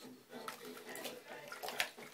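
Water sloshing and splashing in a baby's tummy tub bath, with a couple of sharper splashes near the end, and a few soft vocal sounds from the baby.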